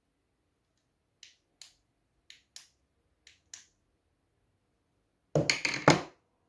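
A hand tool working a new leather pool-cue tip in six short, light scraping strokes, paired two by two. Near the end comes a louder, rough clatter of handling that lasts under a second.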